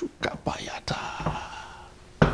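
A man whispering a few short, breathy words under his breath.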